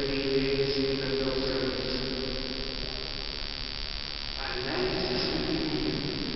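Liturgical chanting in a church: a voice held on long, steady pitches, the phrase fading out around the middle and a new chanted phrase starting about four and a half seconds in.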